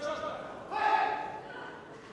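A man's shout: one held call of about half a second, starting about three-quarters of a second in.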